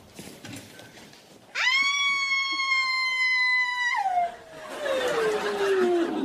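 A loud, high-pitched cry swoops up about a second and a half in and is held on one note for about two and a half seconds. It then breaks into a lower tone that slides steadily down in pitch to the end.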